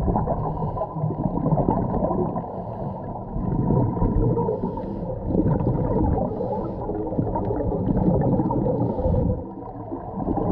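Scuba regulator breathing heard underwater through a camera housing: muffled, rumbling gurgle of exhaled bubbles rising and falling in surges every couple of seconds.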